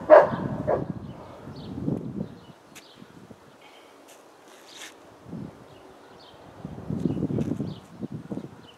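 A man breathing hard as he recovers after a kettlebell set: a loud breath at the start, heavy breaths over the next couple of seconds, a quieter stretch, then more heavy breathing near the end.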